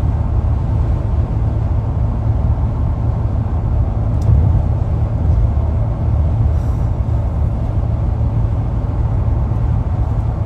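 Steady low road and tyre rumble of a car cruising at highway speed, heard from inside the cabin.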